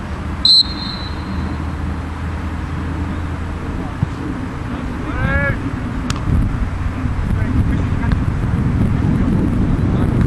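A referee's whistle blows one short, shrill blast about half a second in, then a player shouts around five seconds in, over steady open-air background noise.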